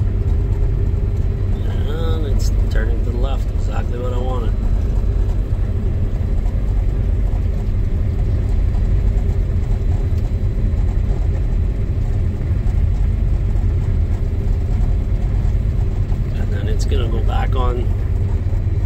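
Steady low rumble of a running combine harvester heard from inside its cab, with a steady hum over it.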